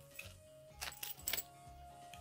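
Background music with steady tones and a low, even beat. About a second in comes a quick cluster of small metallic clinks, like keys jangling, from the spare metal buttons and chain hardware on the cape's tag as they are handled.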